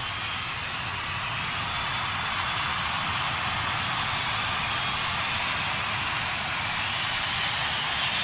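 Steady rushing noise with a low rumble beneath it, no music or voice.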